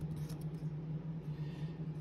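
Faint handling of 1993 Leaf baseball cards as one card is slid off the front of the stack to show the next. A steady low hum runs underneath.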